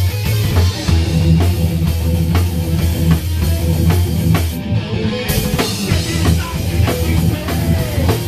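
Live thrash metal band playing loud and fast: distorted electric guitars and bass over a heavy, driving drum kit. The cymbals drop out briefly about halfway through, then the full band comes back in.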